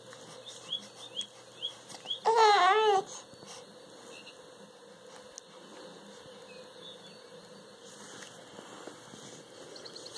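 A seven-week-old baby cooing once, a wavering, drawn-out vowel of just under a second, about two seconds in. Several faint, short, high rising chirps come just before it.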